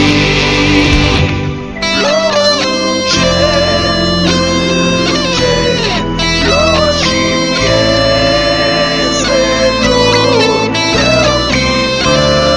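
Electric guitar: an Ibanez GRG170DX with a Seymour Duncan SH-8 Invader pickup, recorded direct through a Line 6 POD XT Live, plays a distorted rock lead with string bends and vibrato over a full rock backing. It opens on a dense held chord; after a brief dip a little under two seconds in, the melodic lead line takes over.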